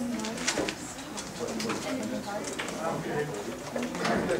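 A person's voice talking continuously, sounding muffled or distant.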